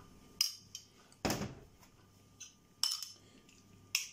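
A spoon clinking and scraping against a ceramic bowl and a stainless steel ring mould as chopped tartar is spooned into the mould: about six short, sharp clinks spread unevenly, one a little longer and fuller, a bit over a second in.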